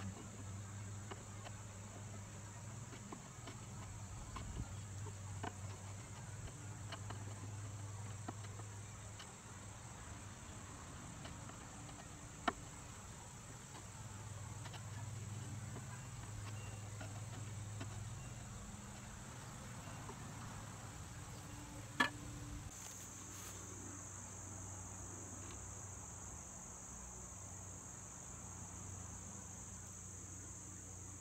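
Steady high-pitched drone of insects outdoors, with faint scraping and scattered clicks from a hand chisel paring hardened epoxy wood putty on a table leg, two of the clicks sharper than the rest.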